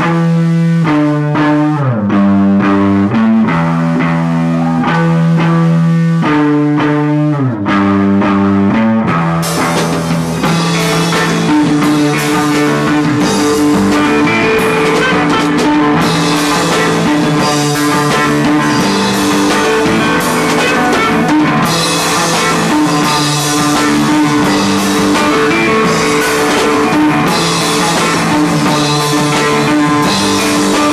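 Live rock band: electric guitar playing a line of held, changing notes, with drums and cymbals coming in about nine seconds in, after which the full band plays on loudly.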